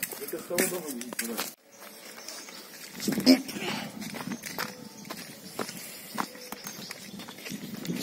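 Footsteps walking over wet, waterlogged ground, an uneven series of soft knocks and scuffs, with a voice in the first second and a half.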